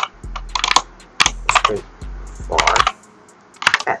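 Computer keyboard typing in four short bursts of keystrokes, with a low hum under the first three seconds.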